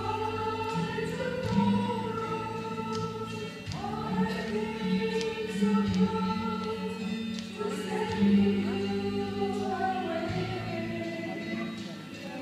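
A female vocal trio singing a slow hymn together in harmony, holding long notes with vibrato, over sustained keyboard accompaniment whose chords change every few seconds.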